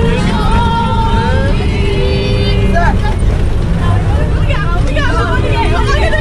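Voices singing and talking inside a moving bus, with long held sung notes in the first couple of seconds giving way to shorter voice phrases. The bus's engine and road rumble run steadily underneath.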